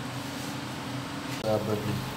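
Steady low hum in the background, with a man saying a brief "uh" near the end.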